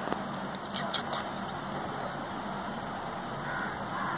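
Steady background noise with a faint low hum, and a few faint clicks in the first second or so.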